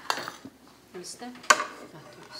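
Dishes and cutlery clinking on a dining table, with a sharp clink at the start and a louder one about a second and a half in.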